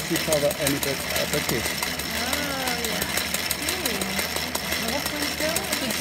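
Old treadle sewing machine converted for al aire embroidery, running fast: a rapid, steady clatter of needle strokes as the hooped fabric is guided under the needle.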